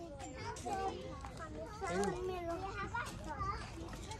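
Faint voices of children playing: scattered chatter and calls in the background.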